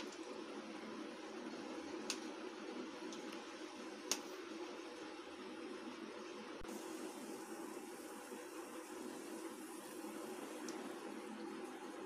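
Faint steady room hum with two sharp clicks about two seconds apart: a small steel spoon knocking against the dishes while rava idli batter is spooned into the molds of a mini idli stand.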